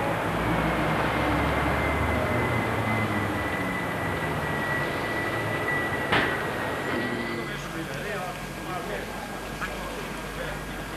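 Street traffic noise at a pedestrian crossing: a low vehicle rumble in the first couple of seconds fades away, with faint voices toward the end and a single sharp click about six seconds in.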